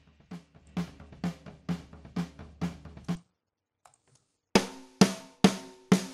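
Rock drum kit playing back from a recording: a steady beat with hits about every half second. Playback stops a little after three seconds in, then starts again about a second and a half later, louder, with a snare that rings with a clear pitch. The snare is a candidate acoustic snare sample being auditioned alongside the recorded drums.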